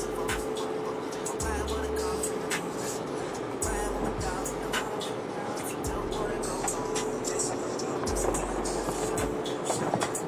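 Rap music with deep, recurring bass notes playing on a car stereo, heard inside the car, over a steady hiss of car-wash water spraying on the body and windshield.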